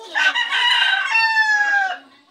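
Rooster crowing once, loud and close, the drawn-out last note sliding slightly down in pitch.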